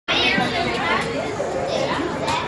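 People chatting, with several voices talking over one another.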